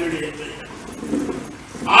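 A man speaking Malayalam into a microphone over a hall's PA, quieter and broken by short pauses, then louder again at the very end.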